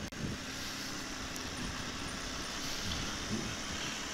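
BMW R1200GS flat-twin motorcycle engine running under way, with a steady hiss of wind and road noise on the bike-mounted microphone and a faint steady hum from about half a second in.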